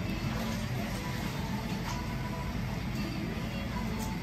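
Steady low rumble of restaurant room noise, with faint music playing.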